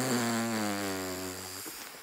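A man's long, breathy voiced exhale on a low note, like a drawn-out sigh. It sinks slightly in pitch and fades away, ending about one and a half seconds in.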